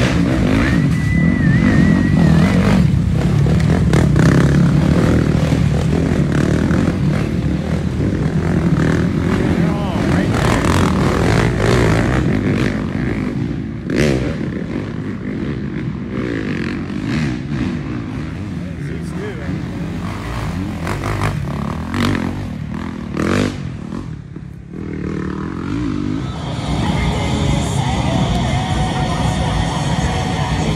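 Off-road race motorcycles riding past, engines revving and easing off as they go, with people's voices in the background. Music comes in near the end.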